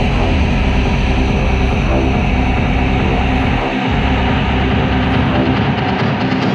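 Electronic psytrance music with a dense, steady bass line under layered synths. The bass briefly drops out a little past halfway through.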